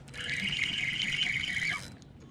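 A fishing spinning reel whirring steadily for nearly two seconds, then stopping, with a hooked bass on the line.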